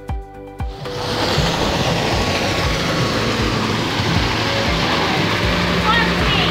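Steady rush of a small waterfall pouring down rockwork into a pool, coming in about a second in after background music stops.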